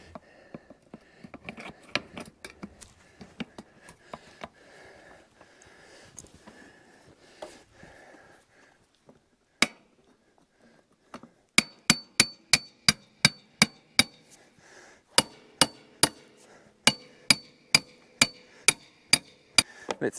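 Hammer blows with a ringing metallic note, fixing wire netting in place. Faint rattles and clicks of the netting being handled come first, then a single blow, then two quick runs of about four blows a second.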